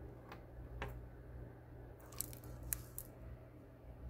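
Faint handling of wire rings on a hand, with a few small, sharp clicks over a steady low hum.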